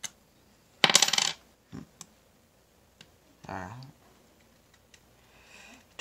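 Metal coins clattering together in one short burst about a second in, followed by a few single light clicks.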